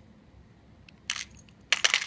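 Small metal body-jewelry barbells clicking and rattling against a clear plastic compartment organizer box as they are handled. There is a short rattle about a second in, then a louder cluster of clicks near the end.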